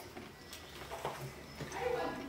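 Faint chewing and mouth sounds over a low, steady room hum, with a few soft clicks spread through the quiet.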